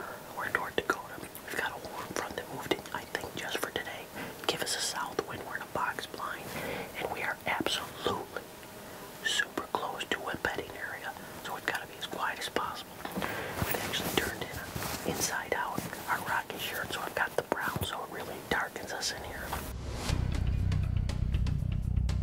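A man whispering for most of the stretch, low and hushed; about twenty seconds in, background music with a steady beat starts and becomes the loudest sound.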